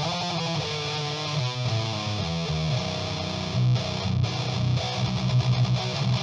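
Heavily distorted electric guitar played through an Exar Squealer SR-04 distortion pedal into an amp and cab simulation: a low riff, turning into fast, tight chugging notes near the end.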